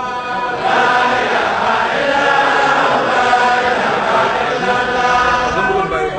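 A congregation chanting dhikr in unison, many voices together in a large hall. It swells much louder about a second in and eases off near the end.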